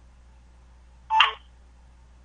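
Open telephone conference line with a low steady hum and one brief blip about a second in.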